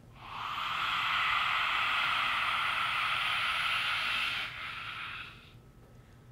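A woman's lion's breath (simhasana): one long, forceful exhale through a wide-open mouth with the tongue stuck out, a loud breathy hiss. It holds steady for about four seconds, then weakens and fades out about five and a half seconds in.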